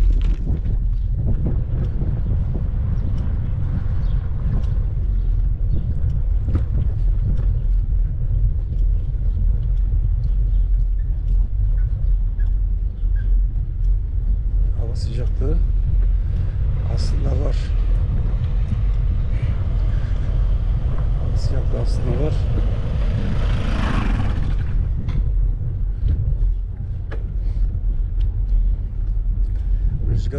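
Steady low rumble of wind buffeting a moving action camera's microphone, with faint voices about halfway through and again a little later.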